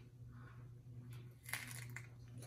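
Faint crunching of a crisp raw lettuce leaf being bitten and chewed, a few short crunches with the loudest about one and a half seconds in.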